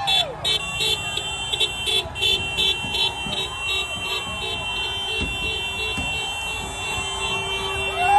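Vehicle horns beeping rapidly, about four beeps a second, for the first two or three seconds, then held as steady tones. Crowd voices and street traffic run underneath.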